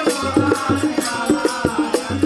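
Bengali Bolan folk ensemble music: a barrel drum beating a quick, steady rhythm under a harmonium, with a voice chanting along.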